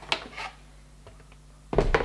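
Handling of a cardboard gift box: a faint rustle and scrape as the lid comes off, then a quiet stretch, and a sudden low thump near the end as the box is lowered.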